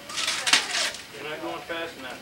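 Wrapping paper crinkling and tearing through the first second as a small child rips open a gift by hand. Then a voice talks or babbles briefly.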